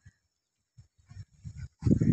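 A man laughing: a few short low chuckles, then loud laughter starting near the end.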